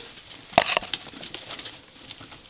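Small pet rats scrabbling and pattering on cardboard and a plastic tray, with a sharp knock and a quick run of clicks a little over half a second in.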